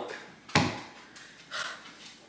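A single sharp knock about half a second in, like a hard object set down or a door bumped shut, then a fainter short sound a little later.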